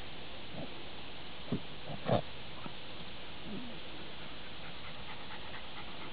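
A dog snuffling with its nose down a mole hole in the grass: a few short sniffs and snorts, the loudest about two seconds in, over a steady background hiss.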